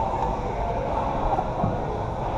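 Steady low rumbling din of a busy gym, with no distinct knock or clank standing out.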